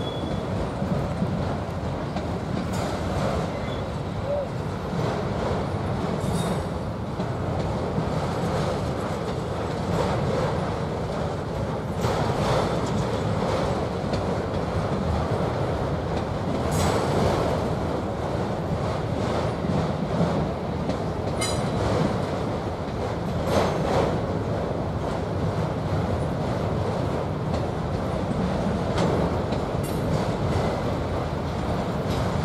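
Freight train of autorack cars rolling past: a steady rumble of steel wheels on rail, broken several times by brief, sharp wheel sounds.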